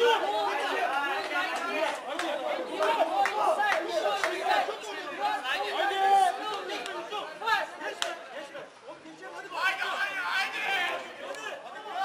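Several people talking over one another in continuous chatter, with a brief lull about two-thirds of the way through.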